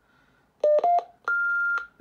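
Repeater courtesy tone heard through the TYT TH-8600's speaker after the transmitter is unkeyed: two short beeps, the second a little higher, then a longer, higher beep.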